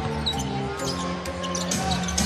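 A basketball being dribbled on a hardwood court, over steady held notes of arena music.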